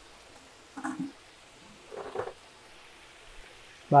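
Water sloshing in a plastic bucket: two short splashes about a second apart as a bucket of fish is handled, over a faint steady hiss.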